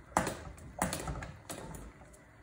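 A stainless mesh strainer tapping against a pot of pasta water as spaghetti is scooped out and lifted to drain: three sharp metallic taps, each with a short trailing clatter.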